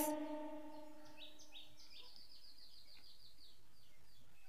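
Faint bird song: a rapid run of short, high chirps starting about a second in and lasting about two and a half seconds, over a soft steady outdoor hiss.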